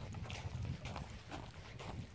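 Faint, irregular taps and rustles from a handheld phone being moved about, over a low rumble.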